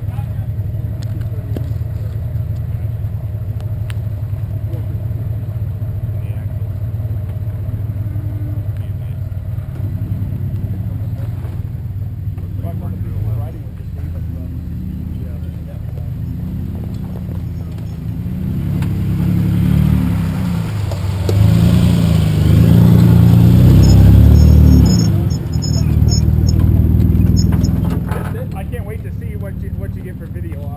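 Modified Jeep's engine running at low speed with throttle changes as it crawls over rock toward the camera. It grows much louder about two-thirds of the way through as the Jeep passes right over, then drops off near the end.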